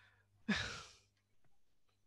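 A single audible breath out, like a sigh, about half a second in, fading within half a second.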